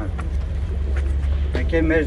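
A man speaking in short phrases over a steady low rumble.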